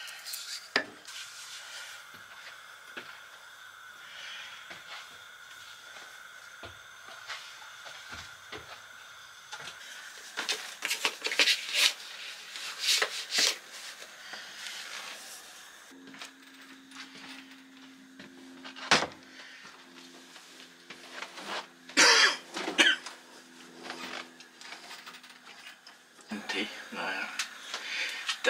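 A metal spoon clinking against a ceramic mug while stirring a drink. Then knocks, rubbing and clunks as laundry is loaded into a Beko front-loading washing machine and its door is handled and pushed shut.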